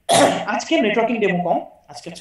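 Speech: a person talking, opening with a short harsh noisy burst.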